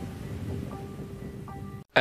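Quiet, sparse background music from the anime's soundtrack: a few soft held notes over a low, hazy bed of sound.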